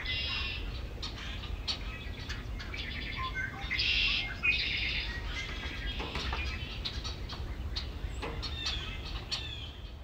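Several wild birds chirping and singing, many short calls and trills overlapping, over a steady low background rumble.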